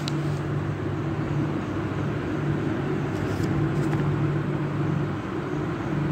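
A steady low mechanical hum with a pitched drone that fades in and out, and a brief faint rustle about three seconds in.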